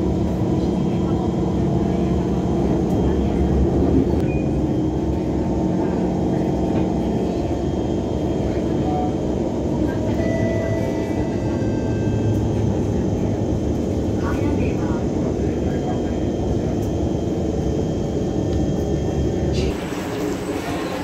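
Steady running noise of a metro train heard from inside the carriage: a constant low rumble with a low steady hum.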